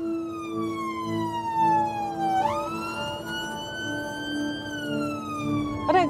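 Ambulance siren wailing over a steady low hum. Its pitch falls slowly, jumps back up about two and a half seconds in, climbs gently, then falls again near the end.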